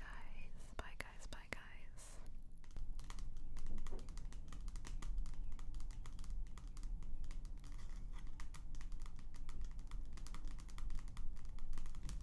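Fingertips and nails tapping rapidly and lightly on a glossy magazine cover: a dense, irregular run of small clicks from about three seconds in.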